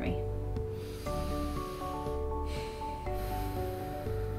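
Soft background music with sustained chords that change about a second in and again near three seconds. Under it, a long breath drawn in through the nose with the mouth held closed on a bite gauge.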